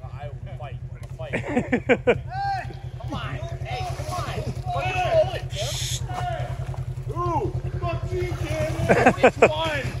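Several men shouting, hooting and laughing over a vehicle engine idling steadily underneath.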